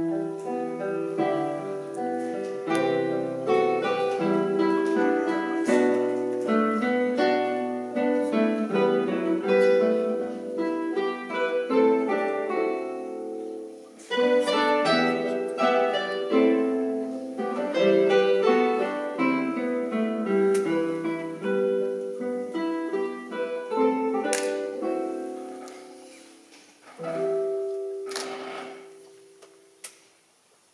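Four classical guitars playing an ensemble arrangement of an Irish harp tune, in many quick plucked notes. The music breaks off briefly about halfway, resumes, and ends on a final chord that rings out and fades away.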